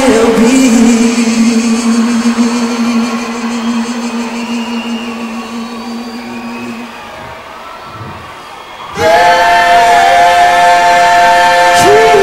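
Live pop vocal singing one long held note over a stadium sound system. The note fades away over about seven seconds, and about nine seconds in a loud sustained chord from the band enters suddenly.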